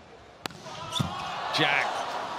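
A volleyball bounced on the hard court floor before a serve, two sharp bounces about half a second and one second in. Arena crowd noise swells behind them.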